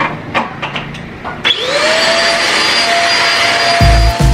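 Corded handheld vacuum cleaner switched on about a second and a half in, after a few light handling clicks; its motor spins up and settles into a steady whine with a hiss of suction as it vacuums dust off a gas cooktop.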